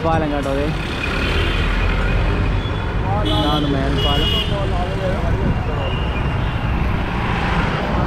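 Busy city road traffic: car, auto-rickshaw and motorbike engines running together in a steady low rumble, with people's voices close by, near the start and again midway.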